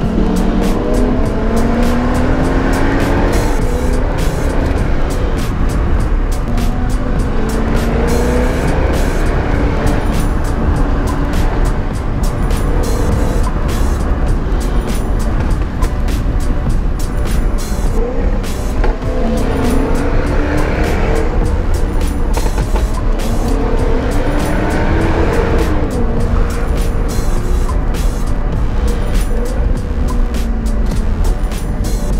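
Jaguar F-Type's engine heard from inside the cabin, accelerating hard through the gears on a winding road: the pitch climbs and drops back with each shift, over and over, with many sharp crackles throughout.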